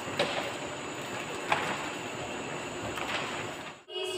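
Steady classroom background noise, a hiss without words, with a few faint taps spread through it and a brief dropout just before the end.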